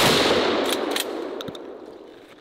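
Gunfire from an M16-style semi-automatic rifle: a loud shot right at the start, its report echoing away over about two seconds, with a few sharp cracks in the tail.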